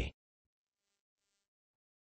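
Near silence: a synthetic text-to-speech voice finishes a word right at the start, then there is a pause with no sound.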